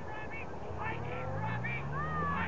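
Distant shouting from players and onlookers on an outdoor rugby field. Underneath, a motor vehicle's engine starts up just under a second in and slowly rises in pitch.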